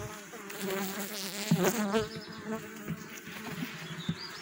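Honeybees buzzing around an open hive: a steady hum whose pitch wavers as single bees fly close, a little louder about a second and a half in.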